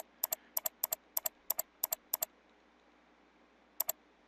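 Computer mouse button clicked repeatedly at about three clicks a second for a couple of seconds, each click a quick press-and-release pair. After a pause comes one more click near the end.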